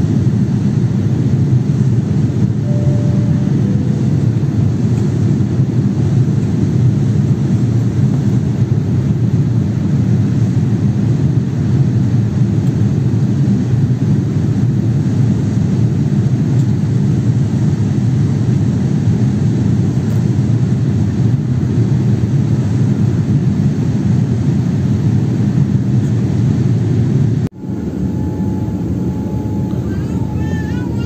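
Steady low roar of jet airliner cabin noise, heard inside the cabin during the descent to land. About two and a half seconds before the end it cuts out abruptly, then comes back quieter with a faint steady whine over it.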